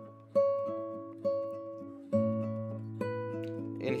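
Nylon-string classical guitar played slowly: four plucked notes or chords about a second apart, each ringing and fading before the next, as a chord change is worked through.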